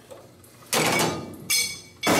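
Sheet-metal shut pillar panel handled against the car's steel body: a scraping rub about 0.7 s in, then a metallic knock with a brief ringing tail about 1.5 s in.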